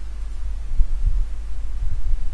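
A steady low electrical hum on the recording, with a few dull low thumps about a second in and near the end.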